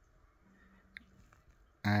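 Near silence: room tone in a small space, with one faint click about a second in and a brief faint hum, before a voice starts near the end.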